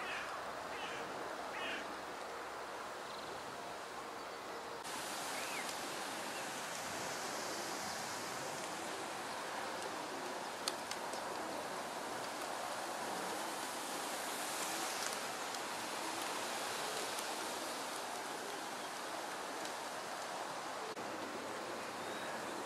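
Steady outdoor background hiss with a few short bird chirps in the first two seconds; about five seconds in, the hiss brightens at a cut.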